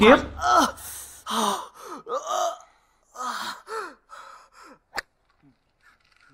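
A person gasping and whimpering in distress, a string of short, uneven breathy cries that each fall in pitch, dying away after about four and a half seconds; a single sharp click follows about five seconds in.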